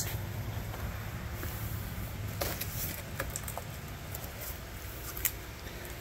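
Faint handling sounds as a seedling plug tray and its cardboard shipping box are moved: a few light clicks and rustles over a low steady rumble.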